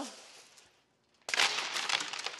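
Sheets of aluminium foil crinkling as they are handled. The crinkling fades out over the first half second, then after a short pause louder crinkling starts about a second and a quarter in.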